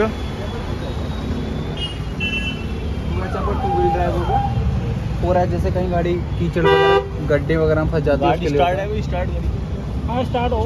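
A steady low rumble of vehicle noise under voices, with a short car-horn toot about seven seconds in.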